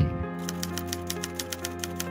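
Typewriter key clicks as a sound effect, a rapid even run of about seven a second, over background music with steady held chords.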